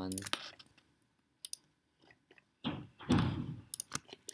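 A few sharp computer mouse clicks while drawing in CAD software, several of them in a quick run near the end. About three seconds in there is a short, louder rush of noise.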